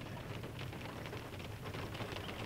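Faint, steady background noise with a light patter inside a car's cabin, in a pause between speech.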